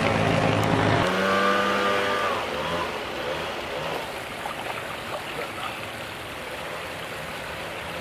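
An engine running steadily, which stops about a second in. A fainter, steady rushing noise follows and drops in level.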